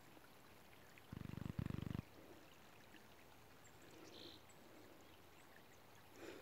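Faint trickle of shallow creek water, broken about a second in by a brief loud low rumble in two parts.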